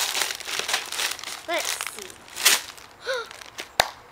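Candy wrappers crinkling as hands rummage through a plastic candy bucket, with a few short hums from a girl and a sharp click near the end.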